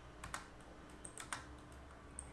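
Faint clicks of a computer keyboard and mouse: two pairs of quick clicks, one near the start and one about a second in.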